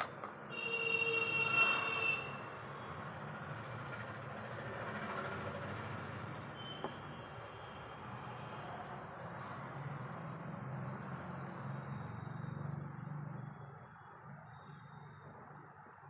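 A horn sounds for about two seconds, then a steady rumbling noise carries on and fades near the end.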